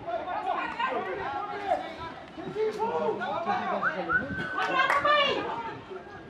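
Several voices at a football pitch chattering and calling out over one another, with a loud, high shout about five seconds in.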